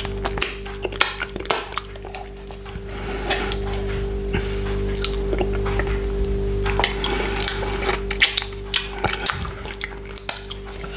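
Close-miked wet finger-licking and sucking mouth sounds: many sharp, wet clicks and smacks as fingers sticky with frozen pineapple juice are sucked, with a longer, steadier stretch of sucking in the middle, over a steady low drone.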